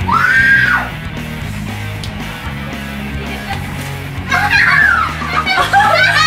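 Background rock music, with a short high shriek that rises and falls at the start. About four seconds in, women scream and laugh as whipped cream is pushed into one woman's face.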